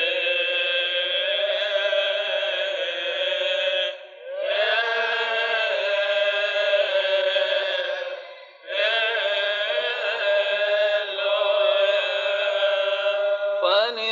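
Coptic liturgical chant sung by male voices in long drawn-out held notes, in three phrases with short breaks about four and eight and a half seconds in.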